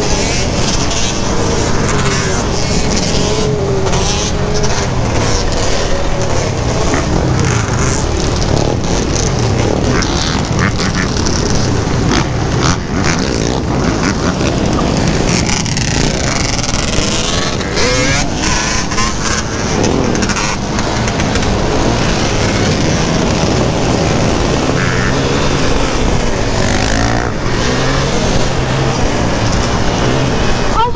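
Suzuki LT-Z400 sport quad's single-cylinder four-stroke engine revving up and down as it is ridden, under heavy wind noise on the camera's microphone.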